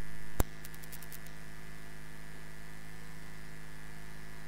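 Steady electrical mains hum from the microphone and sound system. A single sharp click comes about half a second in, after which the hum drops a little in level, and a few faint ticks follow.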